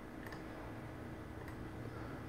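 Quiet room tone with a low steady hum and two faint clicks, about a second apart.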